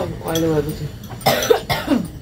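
A person's voice briefly, then coughing for about half a second, starting a little over a second in.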